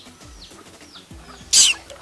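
Faint, short, high chirps of a small bird repeating every few tenths of a second, then a short, loud hissing burst near the end.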